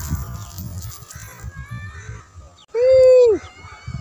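Wind buffeting the microphone in gusts, with one loud drawn-out call about three seconds in, its pitch rising then falling.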